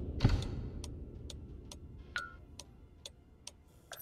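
Wall clock ticking steadily, about two ticks a second. A low rumble fades away under it over the first second or two, with one stronger knock about a quarter-second in.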